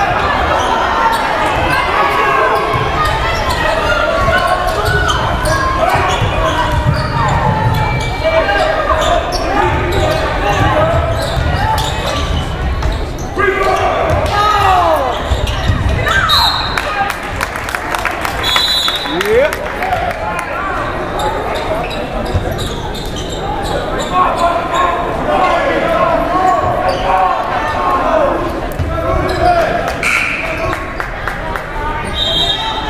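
Basketball bouncing on a gym's hardwood floor during play, amid the voices of players and spectators echoing around a large gym.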